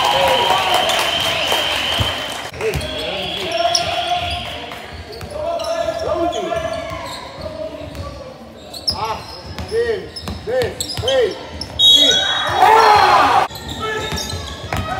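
Basketball game in a reverberant sports hall: a ball being dribbled on the hard court, shoes moving on the floor, and players and spectators shouting, loudest near the start and again near the end.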